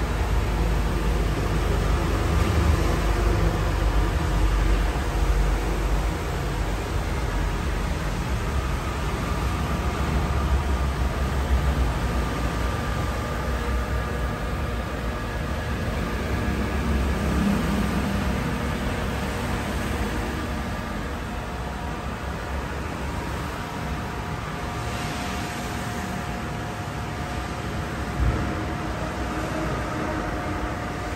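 Steady background noise of a workshop: a low rumble with a hiss over it, easing a little in the second half, and one short knock near the end.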